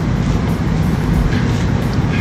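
Background music with a heavy, steady bass under room noise.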